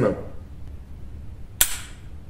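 A single shot from a Desert Eagle .357 Magnum semi-automatic pistol about one and a half seconds in: one sharp crack with a short ring of echo from the indoor range. The pistol then fails to chamber the next round, a feeding malfunction.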